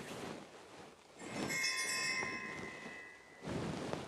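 A ringing sound made of several steady tones starts about a second in, holds for about two seconds and then cuts off short.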